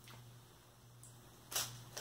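A quiet room, broken by one short, sharp noise about a second and a half in.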